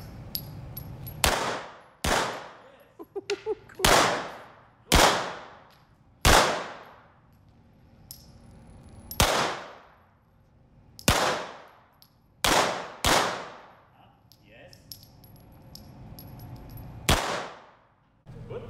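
Uzi submachine gun fired in about ten single shots at uneven intervals, each a sharp crack followed by a long echo off the walls of an indoor range.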